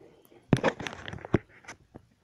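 Close handling noise: rustling and knocks of the recording device and a plush toy being moved about, starting suddenly about half a second in, with a sharp knock a little after the middle and another soon after.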